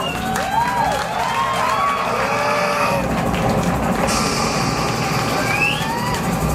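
A club crowd cheering and whooping, many short rising-and-falling shouts overlapping over a steady din.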